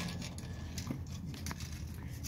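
Quiet garage room tone with a steady low hum, broken by two faint clicks about half a second apart.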